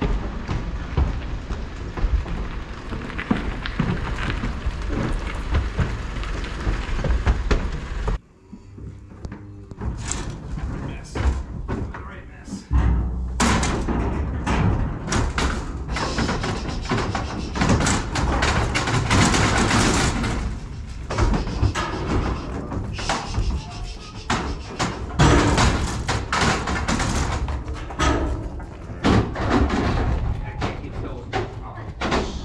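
Wind rumbling on the microphone under background music, then, from about a third of the way in, many sharp thumps and clanks as calves are unloaded from a livestock trailer into a yard of steel gates.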